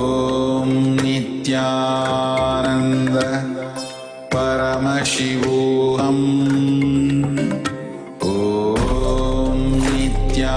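Devotional Hindu mantra chanting with musical accompaniment, sung in long held phrases that break off about four and eight seconds in, with a low drone entering near the end.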